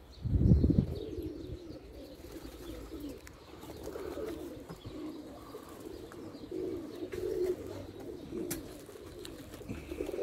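Domestic pigeons cooing over and over in a low, rolling murmur. A brief low rumble about half a second in is the loudest sound.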